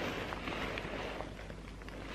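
Faint rustling of thin nylon backpack fabric handled by hand, with a few soft ticks.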